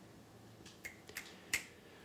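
Four faint, short finger snaps, the last and sharpest about one and a half seconds in.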